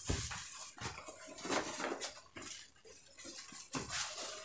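Cut pieces of printed fabric being handled and lifted on a padded table: soft rustling with a few scattered light taps and knocks.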